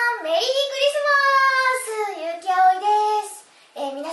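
A young woman's high voice in a sing-song, drawn-out delivery with long held notes, breaking off about three seconds in before ordinary speech starts again just before the end.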